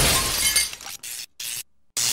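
Cartoon crash of breaking glass as the TV set is ripped out of the wall, loud at first and dying away over about a second, followed by two brief fainter crackles as the severed cables spark.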